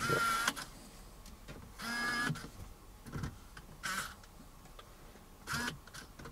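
Small electric motor of an automatic smartphone holder whirring in four short bursts as its clamping arms open and close around the phone.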